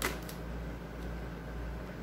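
A brief crinkle of plastic wrap as a wrapped cauliflower is handled, right at the start, followed by a steady low hum.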